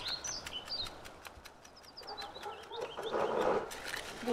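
Small birds chirping in short, high notes, with a brief louder burst of lower noise about three seconds in.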